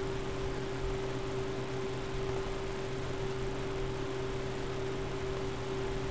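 Steady electrical hum with a constant higher tone over a faint hiss, unchanging throughout: background room tone and microphone noise during a pause in the talk.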